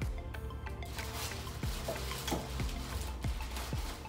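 Background music with a steady low bass and short notes that drop in pitch, a few each second. Faint crinkling of plastic wrapping sits underneath.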